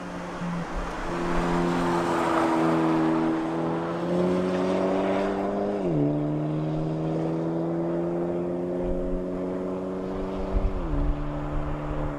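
Hyundai Elantra N's turbocharged 2.0-litre four-cylinder engine pulling on a track. Its pitch climbs slowly and drops sharply twice, about halfway through and near the end, as at upshifts.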